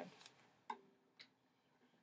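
Near silence with faint handling noise from a ukulele being brought into playing position: two soft clicks about half a second apart, the first followed by a brief faint ring of a string.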